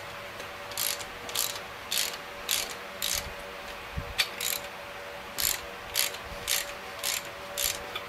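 Ratcheting wrench clicking in short strokes, about two clicks a second, as connecting-rod cap bolts on a Chevy 454 big-block are snugged down by hand until they bottom out, not yet torqued. There is a low thud about halfway through.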